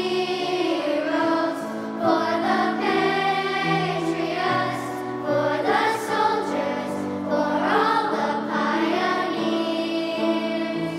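A children's choir singing, with held notes changing pitch every second or so over a steady low accompaniment.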